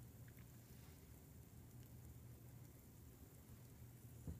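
Near silence: a low steady hum with faint hiss.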